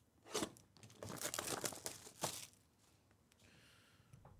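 Plastic shrink-wrap being torn off a sealed box of trading cards: a short rip, then a longer tearing run of about a second and a half that ends in one sharper rip.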